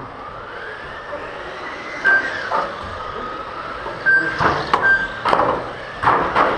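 Electric GT12 (1/12-scale) RC racing cars' motors whining as they lap the carpet track, the pitch rising and falling with speed. Several sharp knocks come in from about two seconds in.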